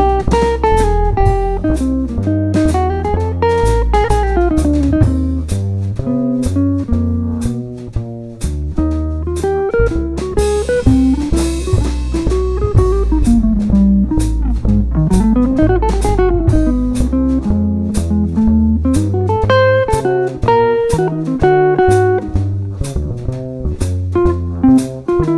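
Jazz quartet playing a blues: a hollow-body electric guitar runs fast single-note lines that climb and fall, over plucked upright bass and a drum kit keeping time. A cymbal wash swells near the middle.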